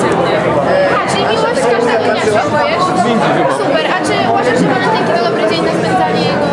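Indistinct chatter: several voices talking over one another.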